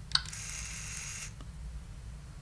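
A click of the LEGO Mindstorms EV3 brick's centre button, then the EV3 medium motor whirring thinly for about a second as it turns one full rotation at low power, ending with a faint click.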